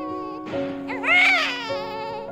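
A newborn baby cries once: a short wail about a second in that rises and falls in pitch. Background music with held notes plays under it.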